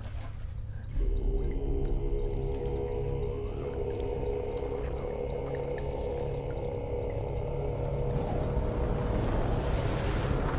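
Ominous horror-film score: a deep rumble and a cluster of eerie held tones that swell in suddenly about a second in and sustain.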